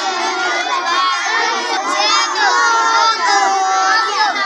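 A large group of children reading their lessons aloud at the same time, many loud, high, overlapping voices without a break.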